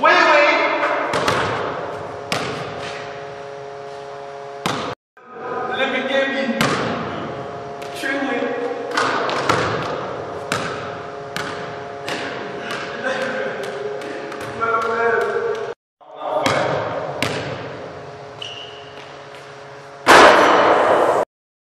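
Basketball bouncing on a hardwood gym floor and striking the rim and backboard: a long string of sharp impacts, each echoing through the large hall, with voices underneath. The sound cuts out briefly twice.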